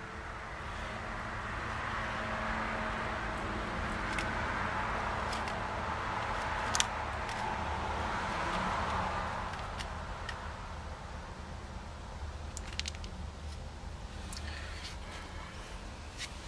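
Red-footed tortoise biting dry tortoise-diet pellets, a few sharp crunches, the loudest about seven seconds in. Under them is a steady background rumble of traffic noise that swells and fades.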